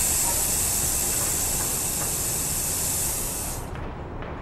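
Steady high-pitched hiss with a low background rumble beneath it, cutting off suddenly near the end.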